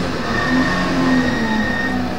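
Porsche 911 flat-six engine heard from inside the cabin, running at steady revs that sag slowly as the car eases off.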